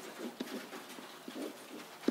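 Pen writing on an interactive whiteboard: faint, scattered taps and scratches of the strokes, with a light click a little under half a second in.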